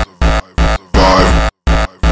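Hardcore electronic music (frenchcore): a loud, distorted, full-range sound with a heavy bass end, chopped into about five short stuttering blocks with abrupt silences between them.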